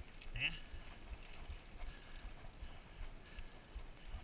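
Mountain bike rolling down a dirt road, heard from a camera on the handlebars: a steady, uneven low rumble of tyres on gravel and wind on the microphone.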